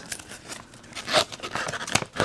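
Folded glossy paper insert being unfolded by hand: irregular paper crinkling and rustling, with a sharper crackle a little past halfway.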